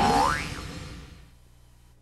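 A springy boing sound effect: a pitched twang that swoops up in pitch, then rings on and fades away over about a second and a half.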